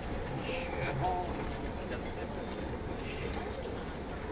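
Steady running noise inside a rubber-tyred Yurikamome automated train moving along its elevated guideway, with low voices murmuring briefly about half a second to a second in.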